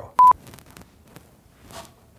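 A single short, loud electronic beep, one steady pure tone, sounded as a bleep effect, followed by faint rustling and small clicks of a person moving about.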